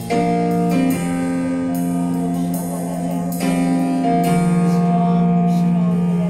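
Live worship music: an electric keyboard playing sustained chords that change about every second or so.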